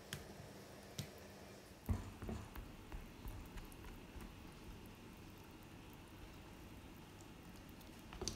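Silicone whisk stirring thick, risen yeast batter in a glass bowl: faint wet squishing, with a few soft knocks against the bowl in the first two seconds, the loudest about two seconds in.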